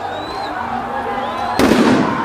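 Crowd shouting, then about one and a half seconds in a sudden loud blast lasting under half a second: a tear gas canister going off.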